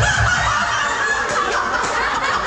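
A rooster crowing, one long call whose held note trails off about a second in.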